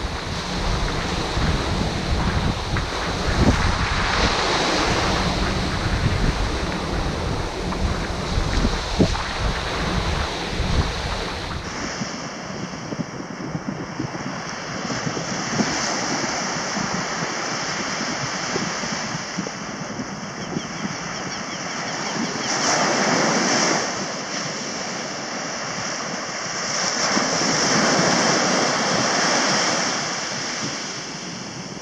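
Sea surf breaking and washing up a sand beach, with wind rumbling on the microphone for the first dozen seconds. In the second half the wash of the waves swells louder twice.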